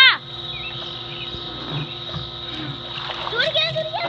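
A girl's short, loud shout, then water splashing and running off as a swimmer heaves herself up on the rail of an above-ground pool, with girls' voices near the end.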